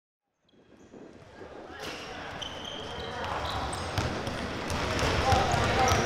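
Several basketballs bouncing on a court amid the chatter of many voices, fading in from silence and growing steadily louder.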